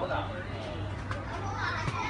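Indistinct voices talking in the background, over a steady low hum.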